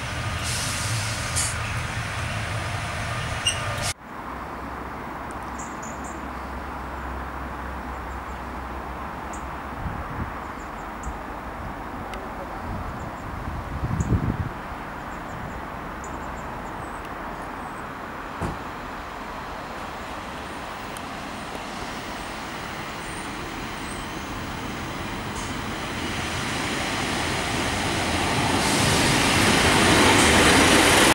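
Class 142 Pacer diesel multiple unit pulling away from a station platform, its underfloor diesel engine running. After a cut, another Pacer approaches from a distance under a steady low hum, with a brief knocking about halfway through. Its sound grows steadily louder over the last few seconds as it draws up close.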